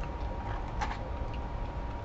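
Steady low room hum with a couple of faint clicks as a waffle-cut fry is picked up from its container, one click a little under a second in.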